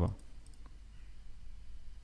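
A pause in speech: a low steady hum with a couple of faint clicks.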